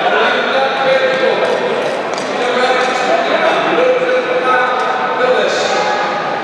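Announcer's voice over a public address system, echoing through a large ice hall, talking without pause.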